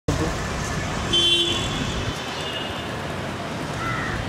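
Steady street traffic noise, with a short vehicle horn toot about a second in.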